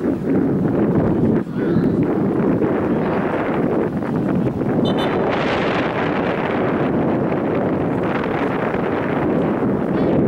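Loud, steady wind noise buffeting the camera microphone.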